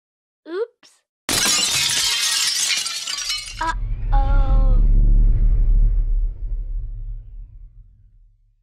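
Logo-sting sound effects: a short gliding whoosh, then a sudden burst of shattering glass about a second in that lasts some two seconds, followed by a deep boom with a ringing tone that slowly dies away.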